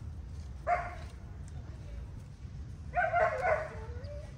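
A cat meowing twice: a short meow just under a second in, then a longer meow about three seconds in that drops in pitch at its end.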